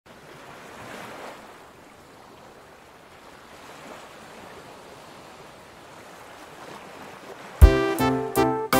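Soft ocean surf washing in gentle swells, then a loud keyboard chord strikes in near the end as the music begins.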